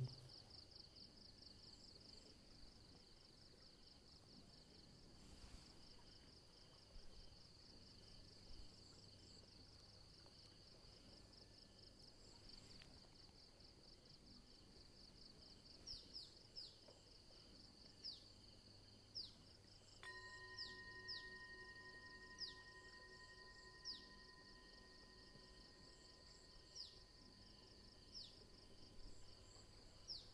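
Near silence with a faint background of insects chirping in a steady pulsing rhythm. From about halfway on, short falling chirps come several times, and a faint steady tone starts suddenly about two-thirds of the way in.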